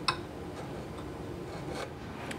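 A marking knife scoring a short scratch into a wooden divider just after the start, followed by quiet workshop room tone with a faint tick near the end.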